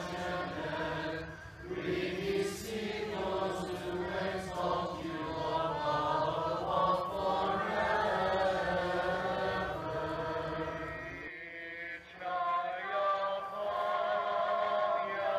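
Congregation of many voices singing Byzantine church chant a cappella. The singing dips and breaks off briefly about eleven to twelve seconds in, then resumes.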